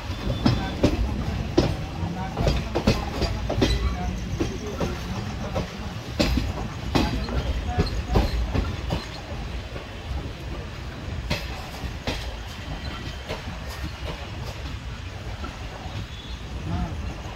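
Indian Railways express passenger coach running at speed through a station yard, heard from the open doorway. A steady low rumble carries irregular sharp clacks as the wheels pass over rail joints and crossings. The clacks come thick over the first ten seconds and thin out after that.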